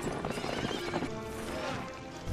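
Horses galloping, with hoofbeats and a horse whinnying, over background film-score music with held notes.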